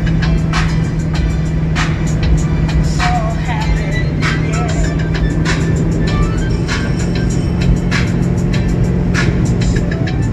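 Music with a steady beat playing loudly on the car's stereo, over the running and road noise of a moving Chevrolet Impala.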